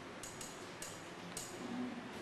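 Marker pen writing on a whiteboard: four short, high squeaky strokes over faint room noise.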